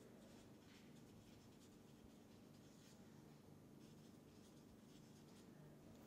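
Felt-tip marker writing on paper, heard as faint scratching strokes over quiet room tone.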